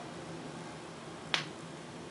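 Stylus tracking a spinning 7-inch vinyl picture disc with no music playing. There is a steady surface hiss with a faint hum, and one sharp click about a second and a third in.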